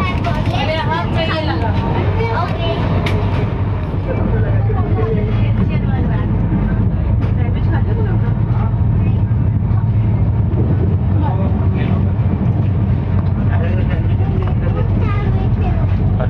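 Steady low rumble of a moving passenger train heard from inside the coach, with voices over it in the first few seconds.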